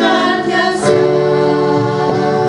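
Live worship song: women's voices singing over acoustic guitar and sustained keyboard chords, with a change of chord about a second in.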